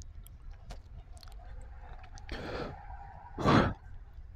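A person chewing cheese curds, with small mouth clicks, a soft breathy exhale in the middle, then a loud sigh about three and a half seconds in.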